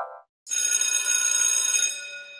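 A bell sound effect rings with a bright, sustained tone full of high overtones for about a second and a half, then fades. It is most likely a school bell cueing the school scene. Just before it, the end of a rising glide sound effect dies away.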